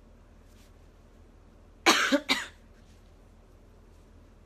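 A young woman coughing twice in quick succession, about two seconds in.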